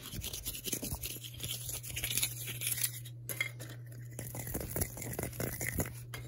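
Fast, close-miked scratching and rubbing of hands and fingers over fabric, a dense run of quick scratchy strokes with a brief break about three seconds in. A steady low hum runs underneath.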